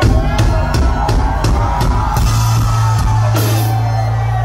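A live rock band comes in all at once and plays loudly: drum kit, bass and guitars, with steady drum hits about three a second.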